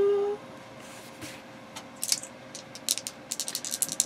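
Dice rattling as they are shaken in cupped hands: scattered light clicks at first, coming thick and fast near the end.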